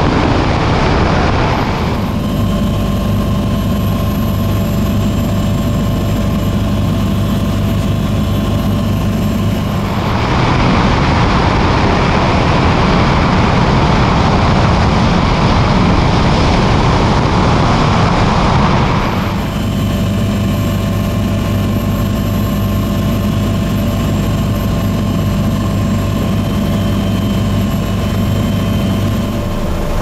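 Bell 429 twin-engine helicopter in flight: a steady rotor and engine drone with a faint high whine. A louder rushing noise covers it in the first couple of seconds and again from about ten seconds in for around nine seconds.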